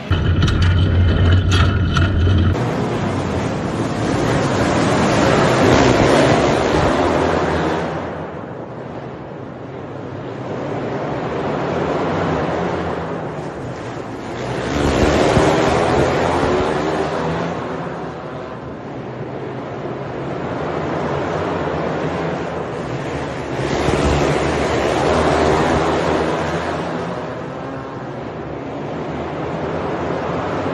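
A field of outlaw karts racing on a dirt oval, their engines swelling and fading in waves about every nine or ten seconds as the pack laps past.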